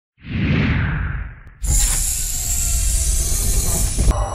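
Intro sound effects: a whoosh that swells and fades out about a second and a half in, then a sudden loud hissing burst that carries on.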